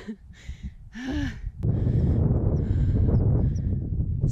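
A runner's hard breathing, a few breathy exhales with a short voiced sigh, out of breath on a steep fell climb. About a second and a half in comes a click, then wind buffeting the microphone as a loud, steady low rumble.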